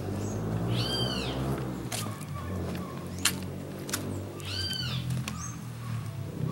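An animal calling twice, each a rising-then-falling cry about half a second long, the second about four seconds after the first. Sharp clicks of footsteps on cobblestones come in between.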